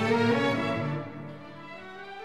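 Orchestral background music with bowed strings, holding slow sustained notes that fade down about a second in.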